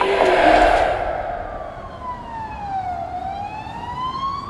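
Crowd noise fades out during the first second. Then a siren wails, its pitch falling slowly and rising again.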